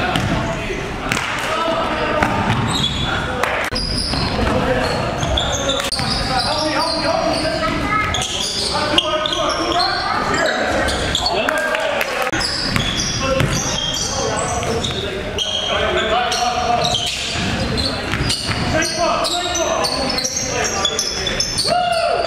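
Basketball game sounds in a large gym: a ball bouncing on the hardwood floor as it is dribbled, under indistinct voices, all with the echo of a big hall.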